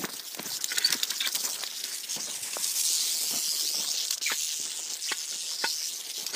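Northern Pacific rattlesnake rattling its tail in a continuous high buzz, the defensive warning of a snake being approached. Footsteps crunch on dirt over it.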